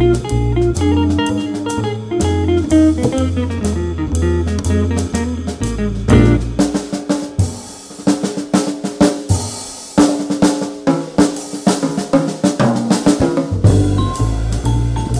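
A live jazz group plays with a walking double bass line for about six seconds. Then the band drops out and the drum kit plays alone, with snare, bass drum and cymbals. The band comes back in at the very end.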